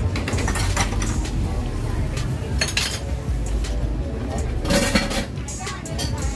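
Clinking and clattering of metal utensils and dishes at market food stalls: a string of sharp clinks, with a louder clatter about five seconds in, over a steady low background rumble.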